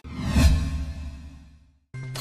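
Broadcast transition sound effect: a whoosh over a low rumble that starts abruptly and fades away over about a second and a half, dying to silence just before the end.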